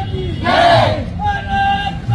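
Marchers shouting slogans in call and response: a held call, then a loud group shout answering it about half a second in, then the call again.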